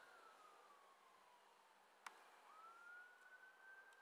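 Very faint distant siren wailing, its pitch sliding slowly down and then back up, with a single small click about halfway through.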